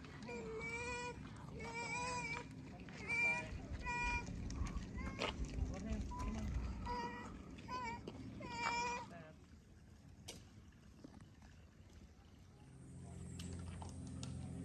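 A high-pitched, wavering voice calls out about eight times in short cries over the first nine seconds, over a low background rumble, then drops away to a quieter stretch.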